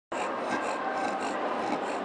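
A bulldog panting with a rasping breath, about three to four breaths a second, over a steady noise of a large hall.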